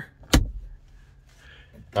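A single sharp plastic click about a third of a second in: the overhead sunglass holder in the car's roof console snapping shut.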